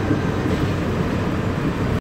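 Steady running noise heard inside a Mark VI monorail car as it pulls into a station: an even rumble and hum from the train on its beam.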